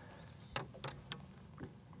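A few faint, sharp clicks and taps over a quiet background hiss while a caught smallmouth bass is handled and held up.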